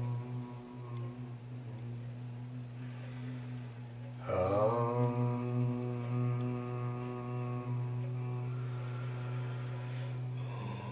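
Voices chanting a long, sustained Om together: a low, steady drone with no breaks. About four seconds in, a fresh, louder voice joins, sliding down onto the pitch.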